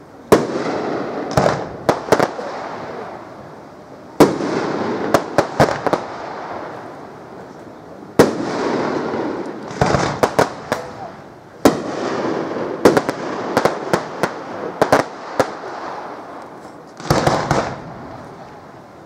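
Aerial firework shells bursting overhead: a loud bang roughly every four seconds, four in all. Each bang is followed by an echoing rumble and quick runs of sharp crackling cracks.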